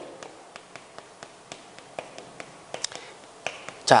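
Chalk on a chalkboard while a short phrase is written: a series of small, irregular taps and ticks as the chalk strikes and drags across the board, with a few sharper ones in the second half.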